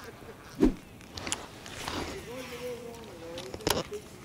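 A man says a word, then a faint drawn-out voice follows, with light knocks and a sharp knock near the end.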